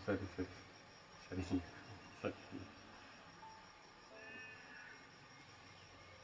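Crickets chirping in a steady, high, finely pulsing trill. Faint music comes in about two-thirds of the way through.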